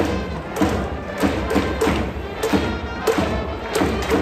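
A baseball cheering section in the stands: drums beating at about two strokes a second under a cheer song.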